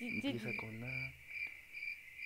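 Steady cricket chirping, the comic sound effect that marks an awkward silence while someone is stuck for an answer, with a faint murmured voice in the first second.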